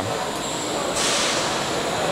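Steady mechanical background noise of a busy exhibition hall with machinery running, and a hiss that brightens about a second in.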